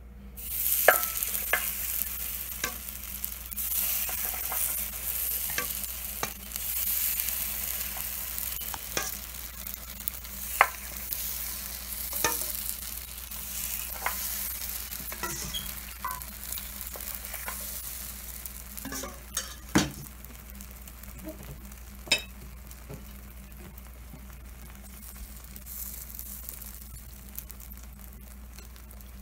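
Takoyaki batter sizzling as it is ladled into the hot, oiled wells of a takoyaki pan, with short sharp clicks of the metal ladle every second or two. The sizzling is strongest in the first several seconds and dies down as the pan fills.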